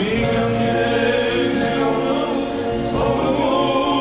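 Male singer performing an Armenian rabiz-style pop song live, his voice gliding between held notes over a band, with drums and cymbals keeping the beat.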